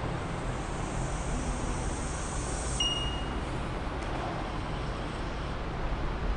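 Steady background noise with a low hum, and a brief high-pitched tone about three seconds in.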